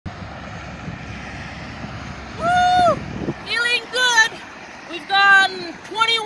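Wind buffeting the microphone at first, giving way about halfway through to a voice calling out in a few drawn-out, high-pitched shouts, which are the loudest sound.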